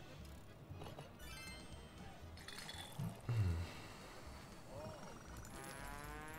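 Faint sound effects from the 'Benny the Beer' online video slot: short chimes as the reels spin and land, and a rising run of tones near the end as a big-win display comes up. A brief voice-like sound breaks in about three seconds in.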